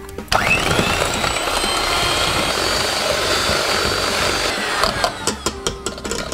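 Electric hand mixer beating cream cheese and cream into eclair filling in a stainless steel bowl. The motor starts suddenly a moment in, runs steadily with a whine, and stops a little before the end, followed by a few clicks.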